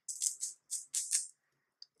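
Command picture-hanging strips, plastic interlocking fastener strips, being pulled apart and pressed together until they click: about five short, crisp rasps in the first second and a half.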